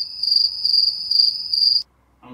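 Chirping crickets, a steady high-pitched chirring that pulses in level, cut in abruptly and stopping suddenly shortly before the end: the stock 'crickets' sound effect used to mark an awkward silence.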